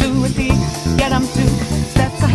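Background song with a steady beat and bass line, with short sung phrases.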